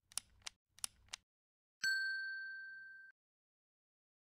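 Subscribe-animation sound effect: four short mouse clicks in two quick pairs, then a single notification-bell ding that rings for about a second, fading, and cuts off.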